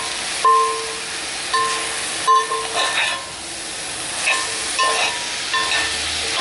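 A utensil turning frying meat, carrots and onions in a cast-iron pot, with a steady sizzle and a few scrapes. A steady mid-pitched tone keeps sounding in short spells of under a second.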